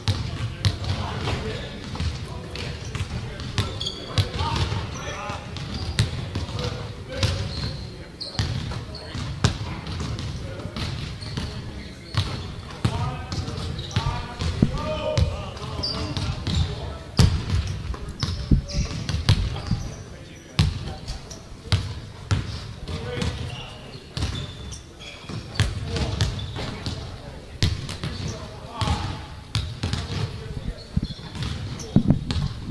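Several basketballs bouncing on a hardwood gym floor, with many irregular, overlapping thuds. Voices talk in the background.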